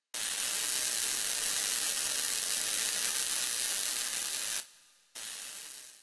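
A steady, even hiss that cuts off suddenly about four and a half seconds in, followed by a shorter, quieter stretch of hiss that fades away near the end.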